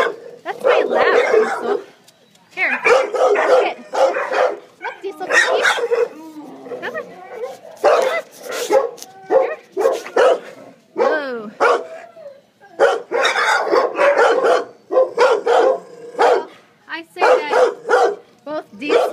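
Dogs barking over and over in short bursts, a few of the calls sliding up and down in pitch.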